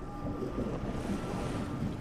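Wind on the microphone over choppy open sea, with waves washing: a steady, even noise.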